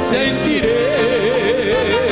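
Live sertanejo band with a male voice holding one long note with a wide, even vibrato, starting a little over half a second in.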